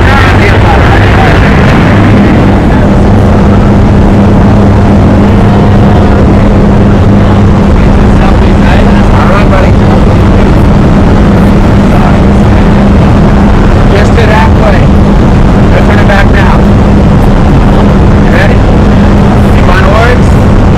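Loud, steady engine and propeller drone heard inside the cabin of a skydiving jump plane in flight. A deeper hum in it fades out about seven seconds in, leaving a steady higher hum.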